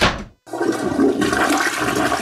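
A door shuts with a short knock, then a toilet flushes, a steady rush of water starting about half a second in.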